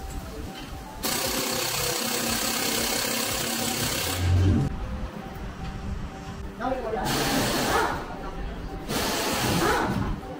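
Pneumatic impact wrench running in bursts on a car's wheel bolts: one long burst of about three and a half seconds, a low thud near its end, then two shorter bursts. Background music plays throughout.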